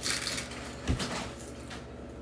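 Quiet handling sounds of candy toppings being scooped from glass bowls with a spoon, a light rustle and clink, with a soft thump about a second in.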